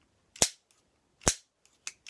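A pair of scissors snapped shut in the air, acting out a menacing snip: two sharp snips about a second apart, then a fainter one near the end.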